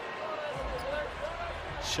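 Quiet basketball-arena sound under a game broadcast: faint distant voices over a low rumble, with no commentary.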